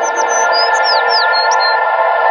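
Ambient music: a held saxophone chord smeared into a wash by long reverb and delay, with birds chirping over it in a quick run of short, high, falling chirps.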